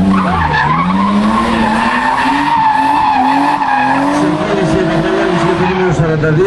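A drift car's engine revving hard, its pitch climbing and dropping with the throttle, while the tyres skid and squeal through a slide.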